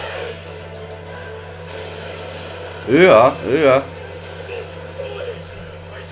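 Faint background music with a steady low hum; about three seconds in, a loud wavering voice sounds twice in quick succession.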